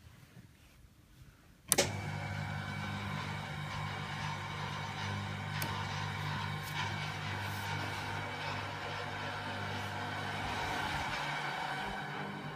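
A wall switch clicks a little under two seconds in, then the electric motor of the room's window blinds starts and runs with a steady hum. The low part of the hum stops about a second before the end.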